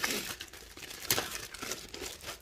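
Clear plastic zip-top bags crinkling as they are handled, with sharper crackles at the start and again about a second in.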